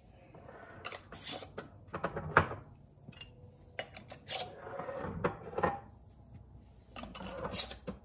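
Metal screw bands being twisted onto glass mason jars, tightened fingertip tight: a series of short scraping twists and light clicks of metal on glass, several in a row.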